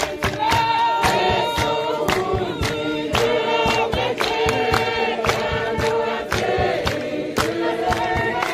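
A choir singing together over a steady, fast percussive beat, roughly three sharp strokes a second.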